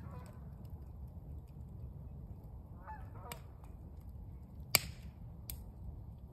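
Geese honking, once near the start and again about three seconds in, over the steady low rumble of an open wood fire, with a few sharp pops from the burning wood, the loudest nearly five seconds in.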